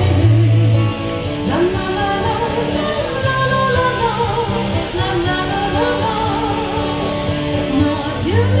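A woman singing a slow Chinese pop ballad through a PA system, with held, wavering notes, accompanied by electric guitar and low sustained bass notes.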